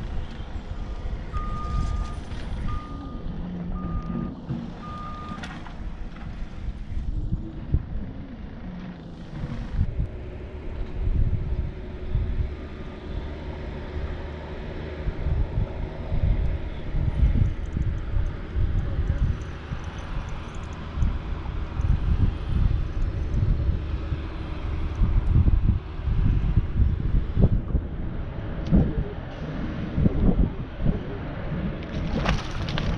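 Four short, evenly spaced electronic beeps at one pitch from the bass boat's electronics in the first few seconds. Wind buffets the microphone throughout with a gusty low rumble.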